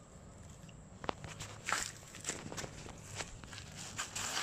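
Short scuffs and clicks of someone moving and handling things close to the microphone. The first second is quiet, a sharp click comes about a second in, and several scuffs follow.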